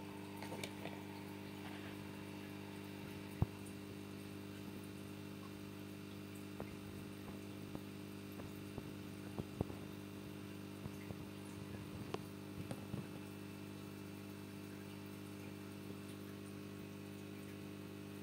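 A low, steady hum made of several held tones, like a mains-powered appliance running, with a few light clicks and taps scattered through it, the sharpest about three seconds in.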